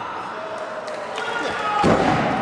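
A wrestler's body slamming onto the wrestling ring's mat, one loud thud near the end, over the arena crowd shouting.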